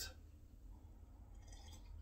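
Near silence with a low steady hum; near the end comes a faint sip as coffee is drunk from a cup.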